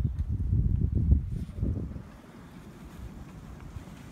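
Wind buffeting the microphone: a low, gusty rumble for about two seconds that then eases off to a faint hiss.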